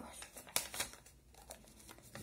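Sheets of coloured paper rustling and crinkling in the hands as two paper circles are pressed together to glue them: a few short, dry crackles.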